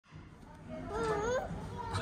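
Children's voices: a high child's voice with pitch sliding up and down about a second in, over faint room background.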